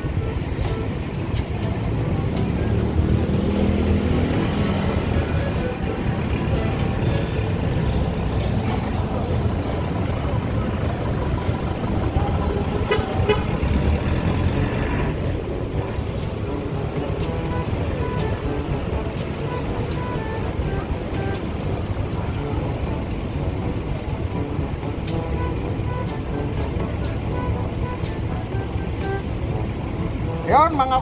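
Steady street-traffic noise from vehicles running past on the road, with a horn tooting now and then.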